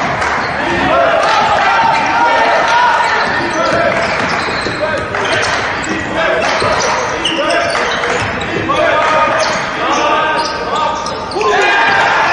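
Live sound of a basketball game on a hardwood court: a ball bouncing, with players and the bench calling out.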